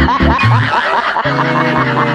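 An edited-in comic snickering laugh sound effect, rapid repeated giggles over a beat, which gives way about a second in to steady held music notes.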